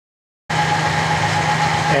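Clausing horizontal milling machine running, a steady mechanical sound with a constant hum and whine, cutting in abruptly about half a second in after dead silence.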